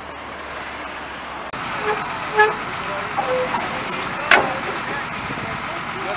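City street traffic with cars going by, a brief car horn toot about two and a half seconds in, and a sharp knock just after four seconds.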